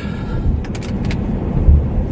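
Car cabin road noise while driving: a steady low rumble from the tyres and engine, with a few light clicks about halfway through.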